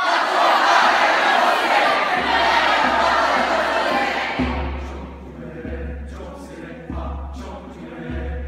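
Choir making a loud, noisy massed vocal sound, like a shout or hiss, that starts all at once and fades away over about four seconds. Quieter choral singing follows, over a low pulse about every second and a half.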